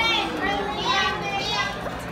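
Excited children's voices over background chatter, with two high-pitched vocal cries, one at the start and a longer one about a second in.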